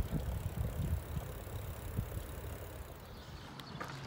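Bicycle riding on an asphalt road: low wind rumble over the microphone and rolling noise from the moving bike, easing off slightly near the end.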